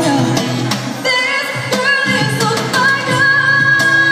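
Live pop song: a female vocalist sings over acoustic guitar and cajon, holding a long high note from about three seconds in.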